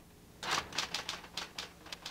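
Typewriter keys striking in a quick, uneven run of clicks, starting about half a second in.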